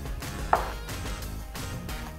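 Background music with a steady strummed-guitar beat. About half a second in there is one short, sharp, higher-pitched sound.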